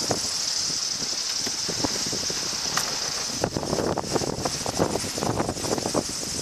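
Sailing yacht driving through a rough sea: a steady high hiss of wind and rushing water, with irregular splashes and knocks from the bow wave against the hull. The splashes come thicker a little past halfway through.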